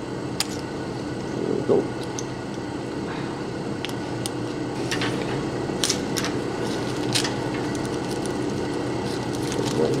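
Small clear plastic parts bags crinkling and light clicks of small parts being handled on a steel workbench, over a steady background hum. The crinkles and clicks come scattered, most of them around the middle.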